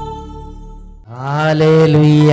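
Background music of held chord tones fades out. About a second in, a man begins chanting 'Hallelujah' into a microphone, holding long, slowly bending notes in a worship refrain.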